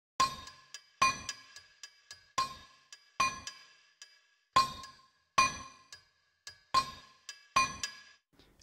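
Sonuscore Trinity Drums 2 virtual instrument playing the high layer of its 'Anvil' preset: a looping, syncopated pattern of sharp, ringing metallic hits that fall in pairs, with lighter ticks between, repeating about every two seconds.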